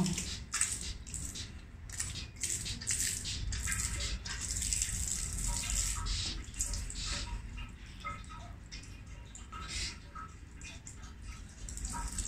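Water squirting from a squeezed rubber enema bulb through its nozzle and splashing into a ceramic sink basin in uneven spurts. The splashing is stronger in the first half and weaker later.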